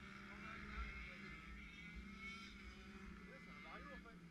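Small 50cc two-stroke scooter engines running: a steady low hum with a fainter, higher whine behind it that rises slightly partway through. Faint voices are heard near the end.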